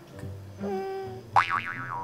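Comic background music with a held note, then, about one and a half seconds in, a cartoon 'boing' sound effect that starts suddenly and wobbles up and down in pitch.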